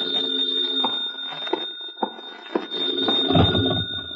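Electromechanical telephone bell ringing for an incoming call, as a radio-drama sound effect.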